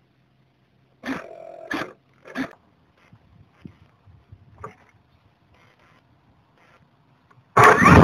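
A few sharp knocks, as from the glider's onboard camera being handled, then faint ticking. Near the end a sudden loud rush of strong wind buffets the microphone.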